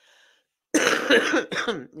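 A person coughing: a short, loud bout of coughs starting about three-quarters of a second in and trailing off near the end.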